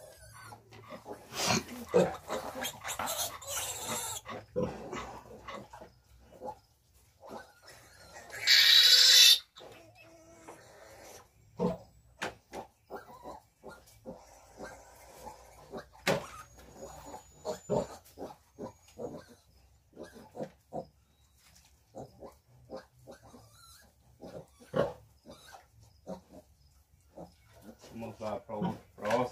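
Three-day-old piglets squealing and grunting as they are handled and given iron injections. One loud, high squeal of about a second comes about a third of the way in, followed by scattered light knocks and clicks.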